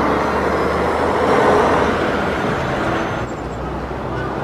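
A Hyundai city bus running beside the road, a steady engine and road noise that fades after about three seconds as it moves off.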